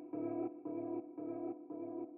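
Electronic music playback: one pitched synthesizer tone repeated about twice a second in short even pulses, slowly fading.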